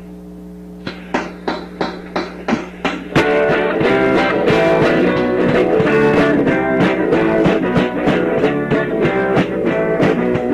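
Rock song opening: a steady hum, then a guitar strums alone from about a second in, and the full band with drums comes in about three seconds in.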